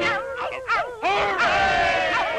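A pack of cartoon hounds baying and howling in wavering, rising-and-falling cries. A long held chorus of cries fills the last half second.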